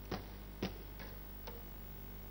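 A pause in speech: a low steady hum with a few faint clicks, about four spread over two seconds.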